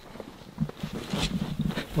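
A man's wordless, drawn-out low vocal sound of strain, starting about half a second in, broken into a few held stretches, with short crunches of snow underfoot as he wades through deep snow.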